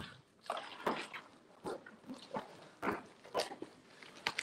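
Paper and cardboard rustling in about six short, irregular bursts as cards and a cardboard box are handled.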